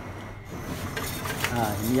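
Metal tongs scraping and rubbing on a flat iron griddle, starting about half a second in, with a few short sharp scrapes.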